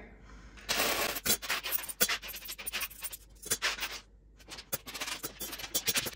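Loose coins clinking into a glass jar of change as they are swept off a wooden desk. A rush of clattering coins comes about a second in, followed by many scattered single clinks, with a short pause partway through.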